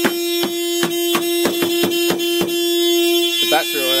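Mazda car horn stuck on, sounding one steady tone without stopping because it cannot be switched off without the key. A quick run of sharp clicks, about three or four a second, sounds over it until about two and a half seconds in.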